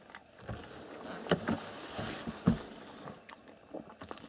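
A few scattered light knocks and clicks of things being handled, with a soft low thump about half a second in and another about two and a half seconds in.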